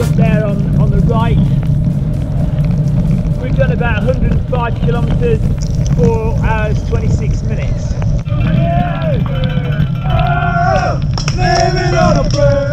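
Shouts and cheers from several voices over a steady rumble of wind buffeting the camera microphone on a moving bicycle. The shouts are short at first and become longer calls in the second half.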